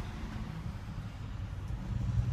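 Low, steady rumble of the Hino 338's diesel engine idling, heard inside the truck's cab.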